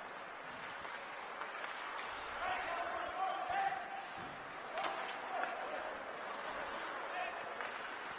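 Ice hockey play sounds in an arena without a crowd: a steady low rink noise with a few sharp knocks of stick, puck or boards, and a drawn-out voice call about two and a half seconds in.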